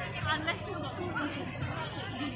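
Chatter of several people talking at once, overlapping voices with no clear words.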